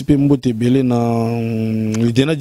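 A man's voice: a few brief syllables, then one long vowel held at a steady pitch for about a second and a half, like a drawn-out hesitation sound.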